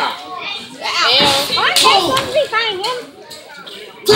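A small crowd of spectators, children among them, yelling and cheering in a hall, with a single thump about a second in.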